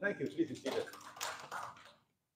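Speech: a voice speaking in a short stretch of talk that stops just before the end.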